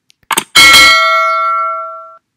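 A mouse-click sound effect, then a single bell ding with several ringing tones that fades out over about a second and a half: the notification-bell chime of a subscribe-button animation.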